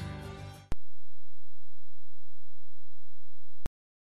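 Background music fading out, then a steady low electronic tone, one pure pitch, held for about three seconds. It starts and stops abruptly, with a click at each end.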